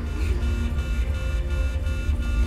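A TV drama's soundtrack: a deep, steady low rumble starting abruptly, under several held high tones of ambient score.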